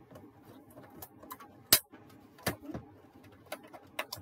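Card stock being handled, folded and set down on a glass craft mat: scattered light clicks and taps, with one sharp loud click a little before halfway through and two smaller knocks soon after.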